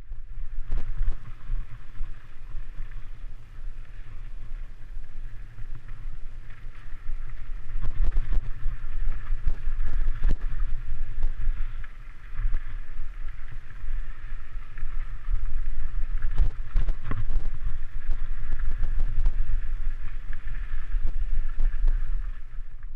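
Mountain bike rolling over rocky dirt singletrack: a steady rumble of wind on the microphone, with scattered knocks and clatter as the tyres and bike hit rocks and bumps.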